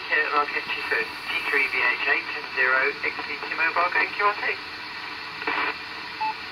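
A voice received on the 6 m amateur band, played through the Realistic PRO-2042 scanner's loudspeaker, thin-sounding over steady radio hiss. The speech stops about four and a half seconds in, leaving hiss with one short burst of voice near the end.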